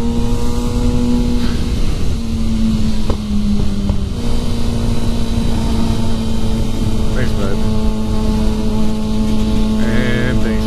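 Kawasaki sport motorcycle's engine running at a steady cruising pitch, easing off a little about two seconds in and picking back up about four seconds in, with wind rushing over the microphone.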